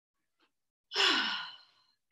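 A woman's audible sighing breath out about a second in, starting loud with a pitch that falls and fades away.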